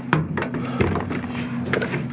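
Several light knocks and taps as string trimmers hanging on a wooden trailer wall are handled, over a steady low hum.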